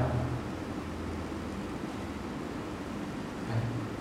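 Steady room background noise, a hiss with a low hum that fades out about a second and a half in, during a pause in a man's talk. A short spoken 'eh?' comes near the end.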